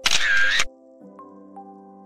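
A loud camera-shutter sound effect lasting well under a second at the start, over soft background music of slow held notes; the music drops out briefly after the shutter and then resumes.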